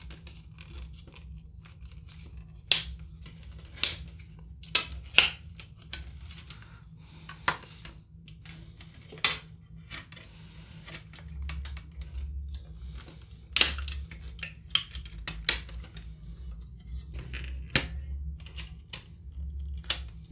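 Scissors cutting through the thin metallic shielding on the inside of a plastic laptop top case: a dozen or so sharp snips at irregular intervals, with quieter handling between them.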